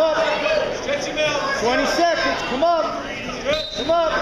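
Shouted wrestling coaching: a man yelling "lock it" over and over in short repeated calls, over the background noise of a gym.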